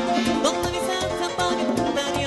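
Live merengue band music, an instrumental passage with a steady beat.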